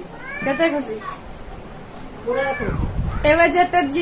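A woman's voice in short, high, drawn-out calls, one rising and one rising and falling, then laughing in quick even pulses in the last second.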